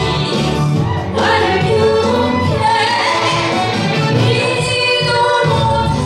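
A woman singing a Korean song into a microphone over instrumental accompaniment, holding long notes.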